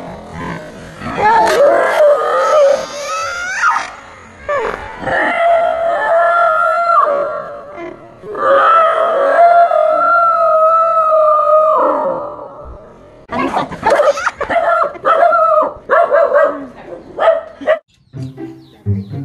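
Dog howling in three long, drawn-out cries, then barking in a quick run of short yelps near the end: a dog alarmed by a life-size toy tiger.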